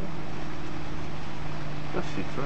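Motorboat engine running at steady revs: an even low hum over a constant noisy wash.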